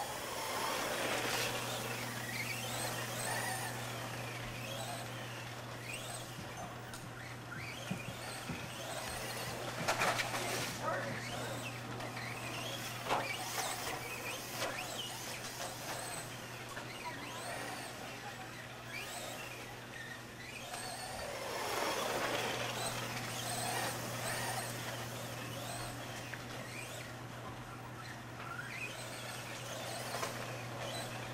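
Radio-controlled off-road buggies racing on a dirt track: high motor whines that glide up and down as the cars speed up and slow, swelling louder twice. A few sharp knocks come about ten and thirteen seconds in.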